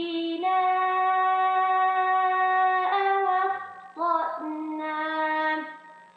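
A woman's voice reciting the Quran in melodic tajweed style in the Warsh reading, drawing out long held vowels with a few steps in pitch and short breaks, then trailing off for a breath near the end. The recitation carries an echo that the judge suspects comes from an added sound effect or from an unfurnished room.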